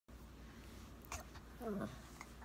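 Chinese crested dog play-biting a hand, giving a short falling whine near the end, with a soft click about a second in.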